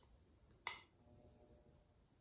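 Near silence: quiet room tone broken by one short, sharp click about two-thirds of a second in.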